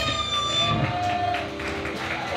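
A live rock song ends: the last crash cymbal rings out and fades over the first half second, while a few sustained electric guitar notes hang on from the amps.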